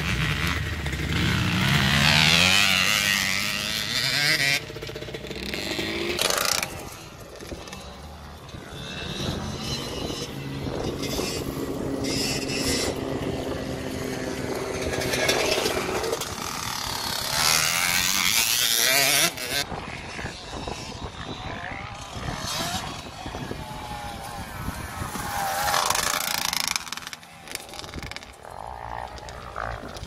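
Youth motocross bikes, including a KTM 65 two-stroke, revving up and down as they ride round the track, with wind noise on the microphone. The sound breaks off and changes abruptly several times as the clips cut.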